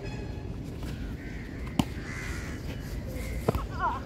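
A bird calling twice with harsh, ragged calls, about two seconds in and again near the end, over outdoor background noise. Two sharp smacks of a volleyball, the first about two seconds in and the louder of the two.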